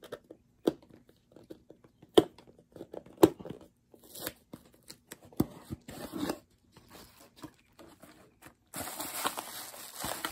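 Cardboard packaging being handled: scattered light knocks and scuffs, then, from about nine seconds in, a continuous scraping rustle of cardboard as an inner box is pulled out of the larger shipping box.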